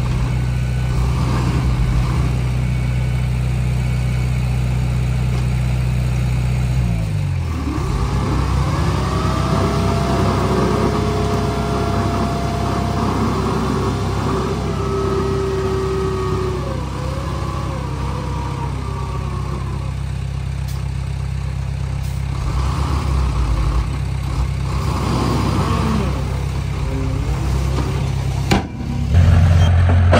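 Diesel dump truck engine running while the tipper bed is raised to dump its load of soil and rock. About seven seconds in, the engine note drops, and then a whine from the hydraulic hoist rises and wavers for about twelve seconds over the sound of the load spilling out. Near the end, a lower, louder bulldozer engine takes over.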